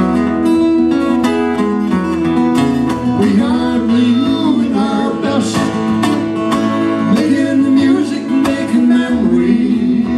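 Two acoustic guitars strumming and picking a country-folk song, played live.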